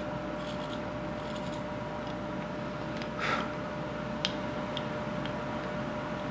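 Knife blade scraping and clicking against basswood while trimming inside a carved ball-in-cage: one soft scrape about three seconds in and a few faint ticks after it, over a steady room hum.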